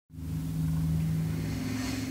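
A steady low machine hum with an even hiss over it, fading in at the very start.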